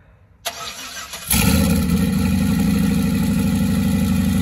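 Turbocharged LS V8 in a Chevy S-10 cold-started: the starter cranks it for under a second, then it catches about a second in and settles into a steady idle.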